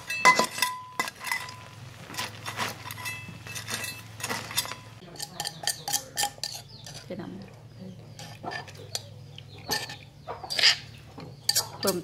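Metal utensils clinking and scraping against cookware and dishes, in many short sharp strikes, with a brief metallic ring just after the start. A low steady hum runs underneath.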